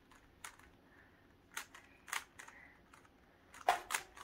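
GAN 356 M magnetic 3x3 speed cube being turned by hand: a handful of short, sharp clicks at irregular intervals as the layers turn, the loudest a quick pair near the end.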